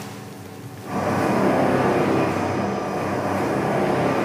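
Pharmaceutical powder-mixing machine running with a steady hum and rush, loud from about a second in after a quieter low hum.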